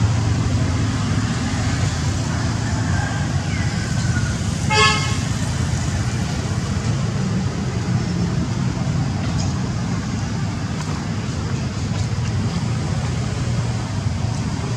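A steady low outdoor rumble, with one short pitched toot about five seconds in.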